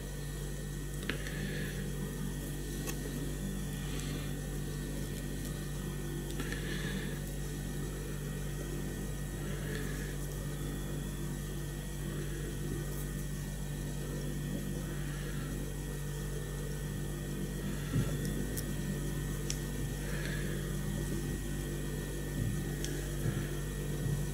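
Steady low electrical hum. Faint, brief rustles come every few seconds as a feather is wound around a fly-tying hook.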